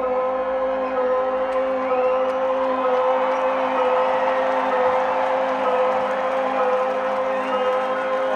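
A sustained droning chord from a live concert's sound system, held steady, under a large arena crowd cheering and whooping.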